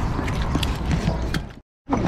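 Camera handling noise and low rumble while walking, with scattered light clicks and ticks. The sound cuts out completely for a moment near the end.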